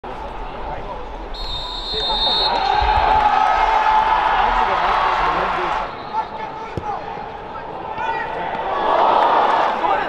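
Football match sound in a near-empty stadium: a mix of players' and spectators' voices, with a ball struck with a thump about six seconds in. The voices grow louder near the end.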